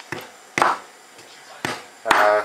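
Wooden pestle knocking and grinding in a ridged earthenware grinding bowl (asanka), mashing food: a few sharp knocks and a short scraping stroke.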